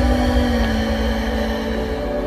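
1981 GMC pickup's engine idling just after being revved, its pitch settling slowly lower.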